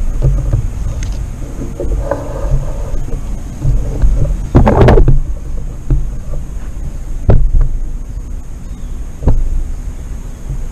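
Wind buffeting the microphone as a steady low rumble, with a louder gust about halfway through and two short sharp knocks near the end.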